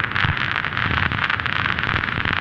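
Static hiss with fast flickering crackle, the glitch sound effect of a video intro title sequence.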